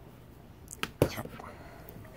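Two sharp clicks and a knock, about a second in, as plush toys are handled and set down on a plastic toy table.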